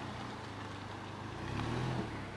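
A small hatchback's engine running at low revs, rising a little near the end as the car pulls away.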